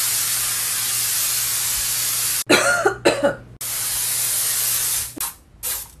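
Febreze aerosol air-freshener can sprayed in two long, steady hissing bursts, the first lasting about two and a half seconds. Between them comes a short fit of coughing, and a few short coughs follow near the end.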